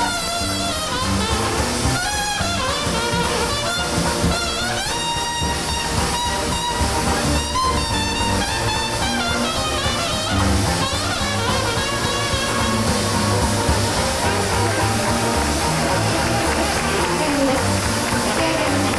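Traditional New Orleans-style jazz band playing live, with the cornet taking a solo of bending, sliding phrases over a steady beat from the rhythm section.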